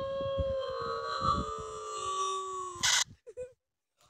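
Closing held note of a parody song playing through a phone's speaker: several voices or tones held together for about three seconds, sagging slightly in pitch. The note is cut off by a short loud burst.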